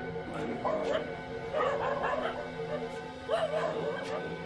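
Background music of steady held tones, with three short bursts of dog barking over it: about half a second in, around two seconds in, and near the end.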